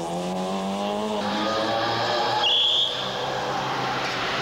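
A rally car's engine at full throttle, its note rising, then changing about a second in. A short high squeal comes about halfway through, typical of tyres scrubbing through a corner.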